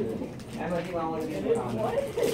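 Indistinct human voices, low and murmured, with no clear words.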